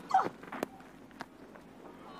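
A short call as the ball is bowled, then the knock of the cricket bat striking the ball a little over half a second in, over faint ground ambience.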